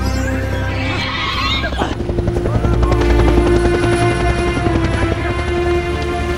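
Helicopter rotors chopping with a heavy low rumble, under sustained film-score music. The rotor beat grows denser and louder about two seconds in.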